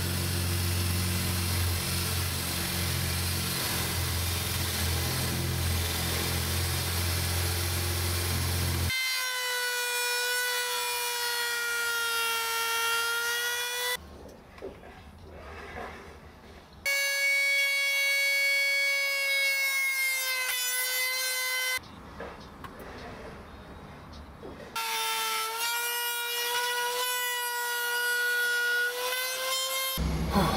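A cordless drill runs steadily into the guitar body for about nine seconds. Then a handheld router, routing out the electronics cavity, runs with a high steady whine in three stretches of about five seconds, with short quieter pauses between.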